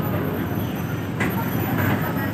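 Steady low rumble of a bus engine heard from inside the passenger cabin, with two brief hisses about a second in and near the end.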